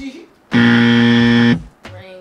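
A game-show style buzzer sound effect: one flat, harsh buzz lasting about a second, starting about half a second in and cutting off abruptly, the kind used to mark a quiz answer as wrong.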